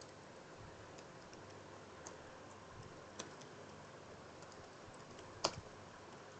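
Computer keyboard typing, faint, with sparse keystroke clicks and one louder click near the end.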